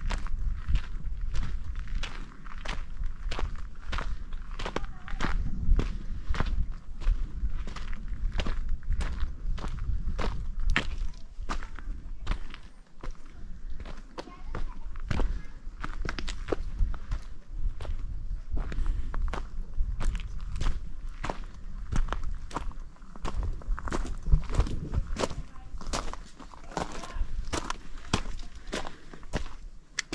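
Hiking boots crunching on a loose gravel and rock trail, steady walking footsteps about two a second, over a low rumble on the microphone.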